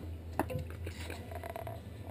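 Quiet handling noise at a work table: one sharp click a little under half a second in, then a few faint small sounds, over a low steady hum.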